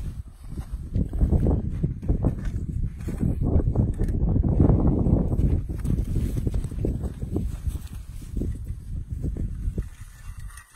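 Soil being scooped and shaken through a trapper's mesh dirt sifter over a freshly bedded trap: a dense, uneven run of scraping and rattling, loudest around the middle.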